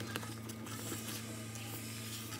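Silicone spatula stirring a thick milk-cream cake filling in a metal saucepan: soft, irregular scraping and squishing ticks over a steady low hum.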